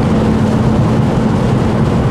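Steady driving noise inside the cabin of an Ora Funky Cat electric car at about 128 km/h on a rain-soaked motorway: tyres on the wet road, rain and wind, with a steady low hum underneath.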